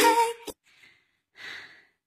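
A song with a woman singing cuts off in the first half second with a click. Then a woman breathes heavily into a close microphone, out of breath from dancing, with the clearest breath about a second and a half in.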